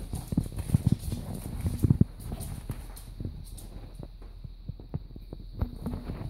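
Puppies' paws and claws clicking and tapping on a wooden floor, a run of irregular knocks that is busiest in the first two seconds and then thins out.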